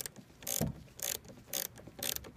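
Socket ratchet clicking in short bursts about twice a second as it is swung back and forth, loosening the clamp nut on a car battery's negative terminal.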